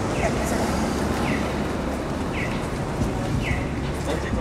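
Street noise: a steady rumble of traffic, with a short falling chirp repeating about once a second.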